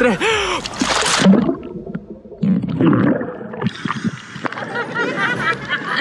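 A person plunges under lake water while holding the camera: a splash about a second in, then a muffled underwater gurgling for about two and a half seconds, then water splashing and sloshing as he comes back up.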